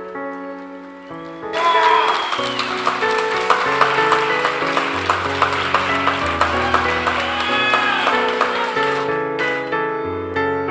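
Crowd applauding and cheering over slow piano music, starting sharply about a second and a half in and dying away shortly before the end, with some voices whooping.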